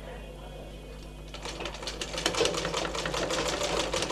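Domestic sewing machine starting to stitch about a second and a half in, a rapid even ticking of the needle and feed as lace is sewn onto fabric.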